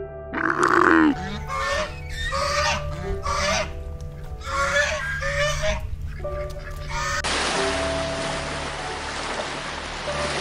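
A loud drawn-out groan from a dromedary camel in the first second, then a series of short nasal honking calls from mute swans, spaced about half a second to a second apart. About seven seconds in they stop and a steady rush of water and wind noise takes over.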